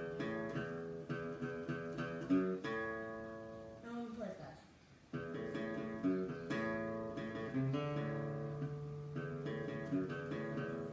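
Acoustic guitar playing a simple tune, note after note. The playing pauses briefly about halfway through, then carries on.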